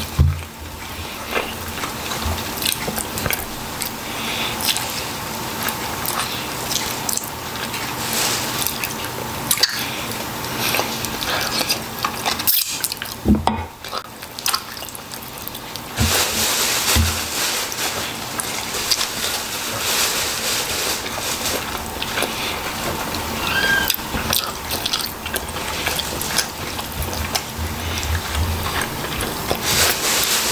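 Close-miked wet chewing and mouth sounds of a person eating chicken and rice with his hands, with many small smacks and clicks.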